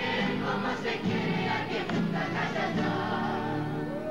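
Large group of young voices singing a folk song in chorus, accompanied by many acoustic guitars strummed together.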